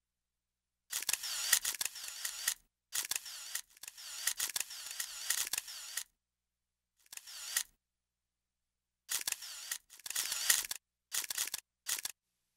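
Press photographers' camera shutters clicking in rapid bursts. There are about seven bursts, each lasting from half a second to two seconds, with short silent gaps between them.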